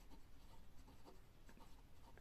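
Faint scratching of a pen writing words on lined notebook paper, in short uneven strokes.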